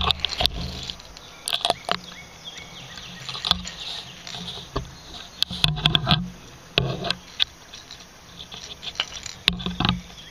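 Handling noise on a body-worn camera: irregular knocks, clicks and cloth rubbing against the microphone as the camera shifts against a shirt.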